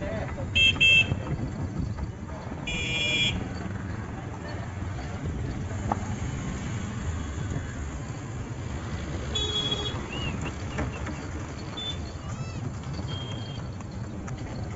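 Street traffic heard from a moving horse-drawn tonga: a steady low rumble with several short vehicle horn toots, the loudest two about a second in, another about three seconds in and one more near ten seconds.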